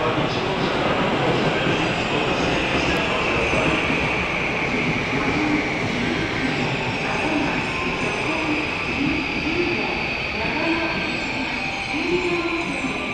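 Electric train running through the station, with a high steady whine that sinks a little in pitch during the first half and then holds, over continuous rail and station noise.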